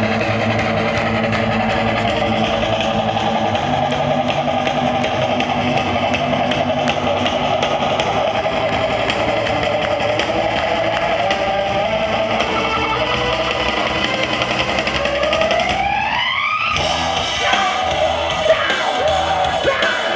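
Loud live mathcore band with distorted electric guitar, bass and drum kit, heard from within the audience. About fifteen seconds in, a rising pitch slide leads to an abrupt stop, then the band comes back in with choppy, stop-start hits.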